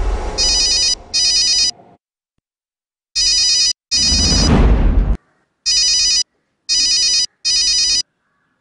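Mobile phone ringtone ringing: bright electronic rings in short bursts of about half a second, mostly in pairs, with gaps between them. A rushing noise swells and fades about four seconds in.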